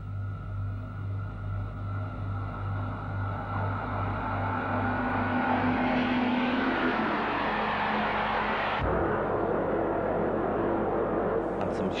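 Deltic diesel locomotive approaching: a steady, pulsing low engine drone with a rumble that rises and grows louder into the middle. At about nine seconds the sound changes abruptly to a different, noisier train sound.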